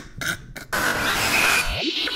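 A man's brief laughter, then, from under a second in, a steady hissing whoosh of an electronic transition effect, with a quick upward pitch sweep near the end.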